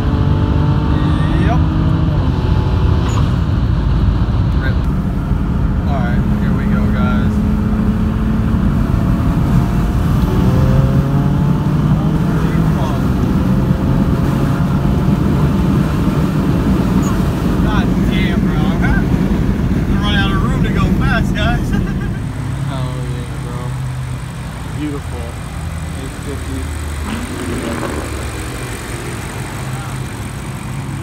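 BMW 335i's N54 twin-turbo inline-six, fitted with upgraded 19T turbos, pulling at full throttle at high rpm in fourth gear, heard from inside the cabin, its pitch climbing. About 22 seconds in the sound drops to a quieter, lower engine sound.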